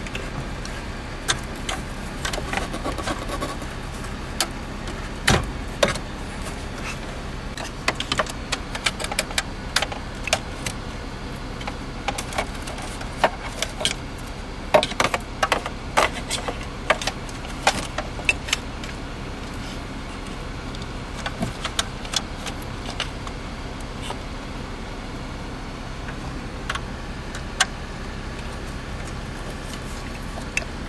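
Irregular clicks, knocks and rattles of plastic wiring connectors and the metal radio chassis being handled as a car's factory radio is pulled from the dash and its connectors are worked loose, over a steady low hum. The handling is busiest in the middle and thins out in the last third.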